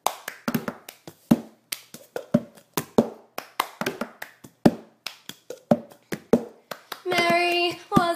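Hand claps and a plastic cup knocked and tapped on the ground in the rhythm of the cup game, a quick steady pattern of sharp claps and knocks. A girl's singing comes in near the end.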